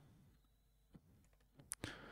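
Near silence broken by a few faint computer mouse clicks; the sharpest comes just before the end.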